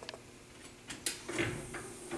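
A few light clicks from the elevator's car buttons and door hardware, then a low steady mechanical hum that starts a little past halfway as the elevator's equipment begins to run, with a couple more clicks over it.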